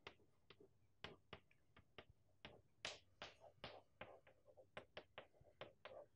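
Chalk tapping and scratching on a blackboard as an equation is written: a faint, quick, irregular run of short taps, about three or four a second.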